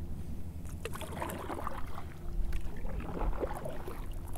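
Kayak paddle strokes: the paddle dipping in and pulling through the water, with light splashes, drips and small knocks. A steady low hum runs underneath.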